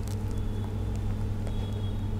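Steady low electrical hum with faint room tone, no other events.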